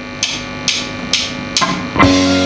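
A drummer's count-in: four sharp, dry clicks about half a second apart. Right at the end the full rock band comes in loud.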